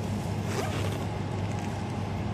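Steady low background hum with faint rustling and scraping as a DVI cable is handled and its connector is worked into the back of a PC's expansion card.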